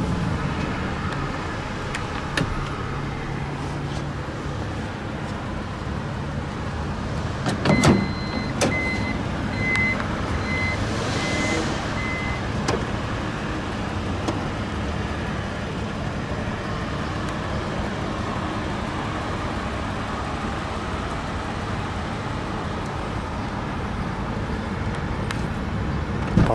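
2012 Toyota Alphard's power sliding door: a thump about eight seconds in, then a run of short high warning beeps for about four seconds as the door operates. A steady low hum runs throughout.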